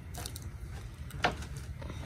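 A dog pawing and scuffing at dry dirt as it hunts a beetle, with one short sharp scrape about a second in, over a low steady rumble.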